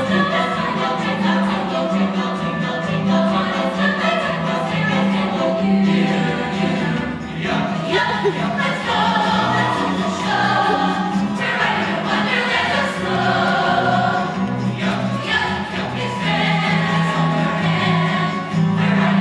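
Mixed choir of male and female voices singing a Christmas song in harmony, over a steady low bass note.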